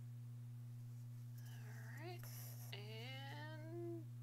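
A woman humming quietly to herself: two rising notes in the second half, the second one longer. A steady low electrical hum runs underneath.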